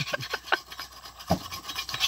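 Hand-sharpening of a dodos, an oil-palm harvesting chisel, heard as a run of uneven rasping strokes along its steel blade. A dull knock comes a little past halfway.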